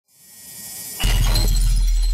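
Logo-intro sound effect: a rising hiss swells for about a second, then a sudden loud impact hit with a deep bass that holds on, topped with a glassy shattering sparkle.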